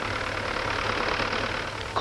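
Farm tractor's engine running steadily while the tractor pulls a plough through the soil, a continuous even drone with a low hum.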